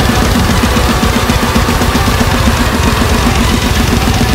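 Heavy metal song with distorted guitars, driven by a fast, even double-bass-drum pattern played on a direct-drive double pedal that triggers the sampled drum sounds of a Roland TD-8 electronic kit.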